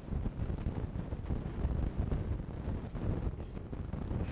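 Low, uneven rumbling noise on the microphone, with no clear events.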